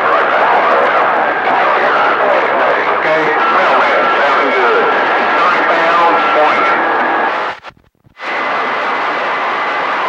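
CB radio receiving distant stations by skip on channel 28: heavy static hiss with faint, garbled voices, and a steady whistle over them for a few seconds in the middle. Shortly after seven seconds the signal cuts out almost to silence for about half a second, then steady static returns with a faint steady tone.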